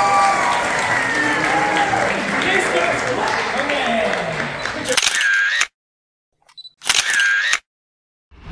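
Many children and adults chattering in a large hall. About five seconds in, the sound cuts out to dead silence, broken by two camera-shutter clicks about a second and a half apart.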